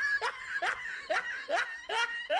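A person laughing in a run of short, evenly spaced bursts, about two a second.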